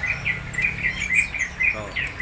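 Caged songbirds chirping: a quick series of short, high chirps one after another, over a steady low hum.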